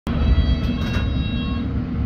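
Interior of a London Underground S8 Stock train carriage: a steady low rumble with a thin high whine that fades out after about a second and a half, and two brief hisses in the first second.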